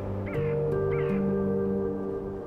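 Background music of held notes with slowly changing chords. Over it, in the first second, come two short high animal calls, each rising then falling in pitch.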